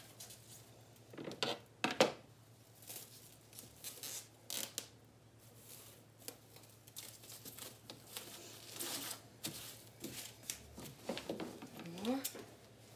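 Clear plastic stretch film rustling and crackling in irregular spurts as it is pulled off its roll and stretched by hand, with a few louder rustles.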